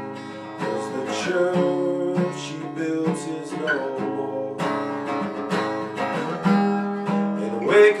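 Acoustic guitar strummed steadily in an instrumental passage of a song, chords ringing between strokes; a singing voice comes back in right at the end.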